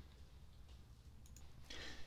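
Near silence: faint room tone with a few small clicks, and a soft breath near the end.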